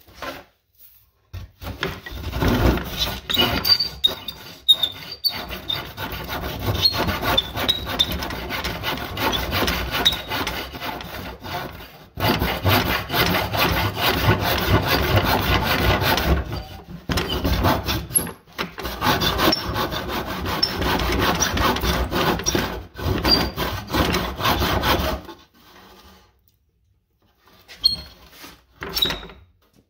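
Hand tool working a wooden board: long runs of rasping strokes on the wood, pausing briefly a few times and stopping near the end.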